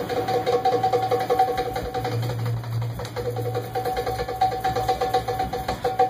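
Live Middle Eastern belly-dance music: hand drums and tambourine play quick, even strokes under a steady held note that breaks off briefly about halfway through.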